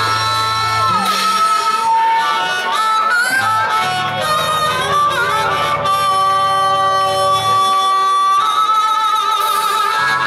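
Harmonica played through a vocal microphone, bending and wavering notes, then holding one long note, over low sustained guitar or bass tones.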